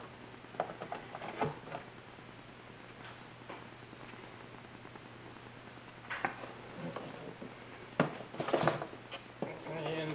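Cardboard product box being handled and set down on a wooden workbench: a few light knocks and scrapes, a quieter stretch, then more handling with a sharp knock about eight seconds in.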